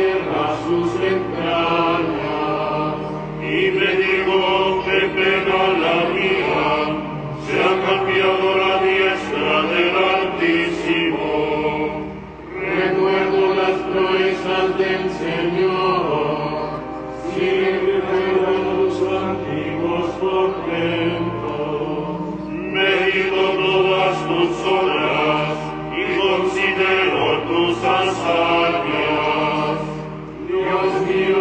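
Liturgical chant sung in phrases of several seconds, mostly held on one reciting note and bending only at the phrase ends, with short breaks for breath between phrases.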